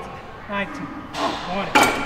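A man grunting with strain at the end of a hard leg curl set, then a loud ringing metal clank near the end as the leg curl machine's weight drops back down.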